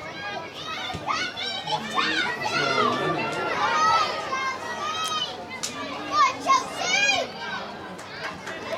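Children among football spectators shouting and calling out, several high voices overlapping, with two louder shouts about six seconds in.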